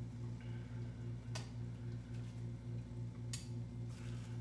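A steady low hum with two light clicks about two seconds apart: a utensil tapping against the waffle bowl maker as cooked egg bites are worked out of it.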